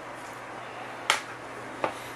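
Two sharp clicks, the first louder and the second weaker under a second later, as hard laptop parts and tools are handled and set down on the desk.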